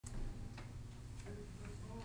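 A few faint clicks, about four in two seconds and unevenly spaced, over a steady low hum of room noise.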